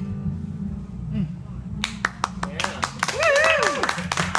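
The last acoustic guitar chord dies away, then a small audience starts clapping about two seconds in, with a voice calling out over the applause near the end.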